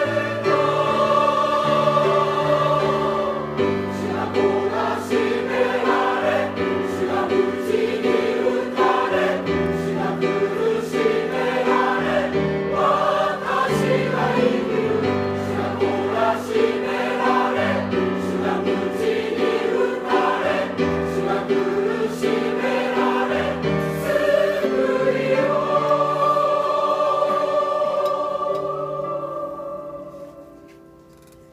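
Church choir singing a hymn in several-part harmony, closing the phrase on a long held chord that fades away near the end.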